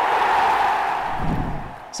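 Transition sound effect: a rush of noise that swells, peaks early and fades away over about two seconds.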